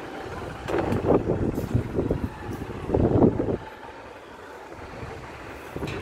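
Wind buffeting the phone's microphone in uneven gusts, strongest about a second in and again around three seconds, then settling to a quieter rumble.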